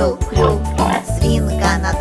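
Children's song backing music with a steady bass line, over which a voice makes several short cartoon pig oinks ("khryu-khryu").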